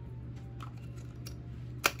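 A microSD card being pushed into the slot of a GoPro Hero 9 Black: faint small clicks of handling, then one sharp click near the end as the card seats.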